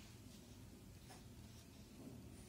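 Faint scratching of a pen drawing lines on paper, a few short strokes.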